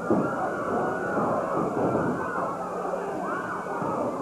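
Wrestling crowd shouting and yelling, many voices overlapping in a steady din, with one rising-and-falling yell standing out about three seconds in.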